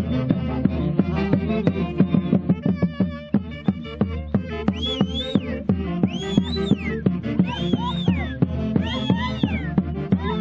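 Andean fiesta music: a steady, quick drumbeat under low sustained instruments, with high sliding notes rising and falling from about five seconds in until near the end.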